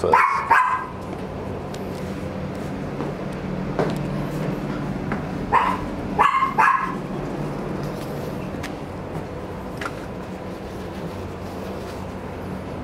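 A dog barking: a short burst of barks at the start and a few more about six seconds in, over a steady low background hum.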